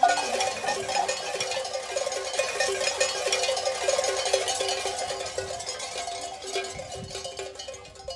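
Bells on a mixed flock of sheep and goats jangling as the animals move: many small overlapping clinks, gradually fading.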